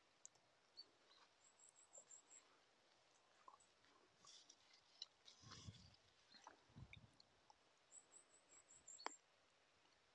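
Near silence: faint mouth sounds of someone chewing a ripe blackberry, with scattered small clicks. Twice, a faint quick run of high chirps.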